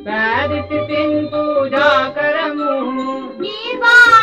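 Music from a Sinhala song: a wavering melodic line over a steady held accompaniment.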